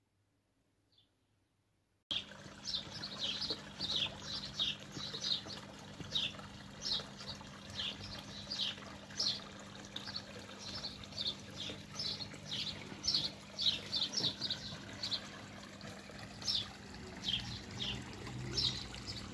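Small birds chirping repeatedly in short, high, downward-sweeping chirps over a steady trickle of water from a garden pond, starting about two seconds in after near silence.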